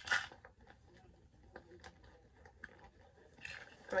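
A purse and the small items going into it being handled: a short rustle, then a few faint, scattered clicks and taps.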